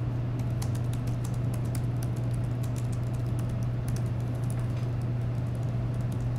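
Scattered light clicks of typing on a laptop keyboard over a steady low hum in the room.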